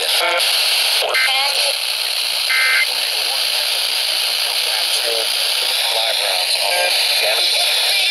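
Midland portable emergency weather radio being tuned up the FM dial: a steady hiss of static broken by brief snatches of station speech and a short tone as it passes stations.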